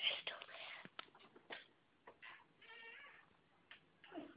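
Hushed whispering, with breathy bursts in the first second and scattered rustles and clicks. About three seconds in comes one short, high, pitched vocal sound.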